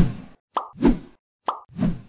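Sound effects for an animated subscribe button: three soft pops about 0.9 s apart, each led in the second and third cases by a short sharp click.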